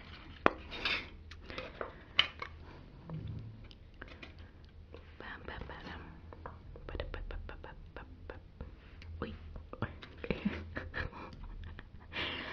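Close-miked wet mouth sounds of eating thick yogurt: lip smacks, tongue clicks and licking. A plastic spoon scrapes yogurt from a foil lid.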